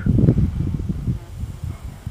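Low, irregular rumbling noise on the microphone, loudest in the first half second and then fading.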